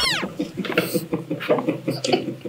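A music cue cuts off at the start with a quick falling pitch sweep, like a tape stop. Then a man's voice, or men's voices, give short broken chuckles and giggles.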